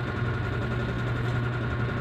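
Steady low background hum, unchanging throughout.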